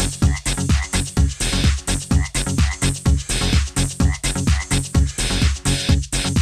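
Electronic dance track with a steady kick-drum beat, about two beats a second, and a croaking, frog-like sound repeated in the mix.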